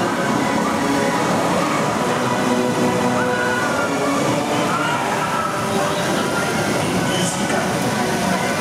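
Suspended top spin ride in operation: its themed soundtrack music plays over splashing water from the ride's water effects, mixed with riders' and onlookers' voices.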